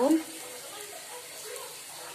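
Wingko babat cakes sizzling in a non-stick frying pan: a soft, steady frying hiss as they finish cooking.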